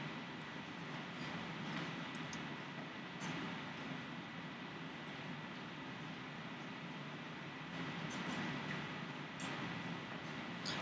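Steady low background hum and hiss of a classroom, with a faint steady high tone and a few faint clicks.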